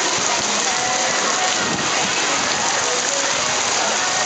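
Steady rush and splash of water on a water-park lazy river, where spray features pour into the flowing channel, with faint distant shouts over it.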